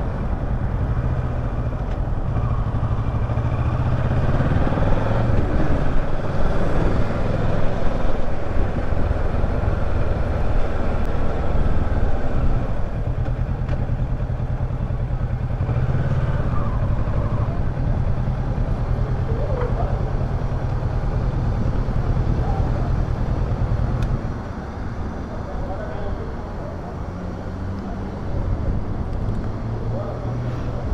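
Kawasaki Versys 650's parallel-twin engine running as the motorcycle rides at low speed. About three quarters of the way through, the engine sound drops to a quieter, steadier level as the bike slows. Voices can be heard in the background.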